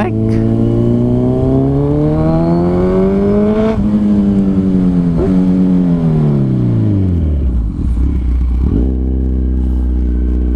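Kawasaki Z1000 R's inline-four engine pulling up a steep incline, its revs climbing steadily for about four seconds. The revs then fall away over the next few seconds and settle into a low, steady run.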